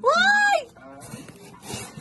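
A short high-pitched squeal, about half a second, rising and then falling in pitch, from a person reacting in fright or excitement. Softer rustling of cloth and packaging follows.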